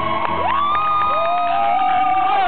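Live acoustic guitar and cajón music with long sung vocal notes that slide up in pitch and then hold, with whoops from the audience.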